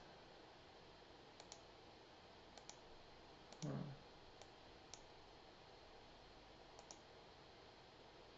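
Faint computer mouse clicks over near silence, mostly in quick double clicks, five times across the stretch. A short hum from a man's voice comes about three and a half seconds in.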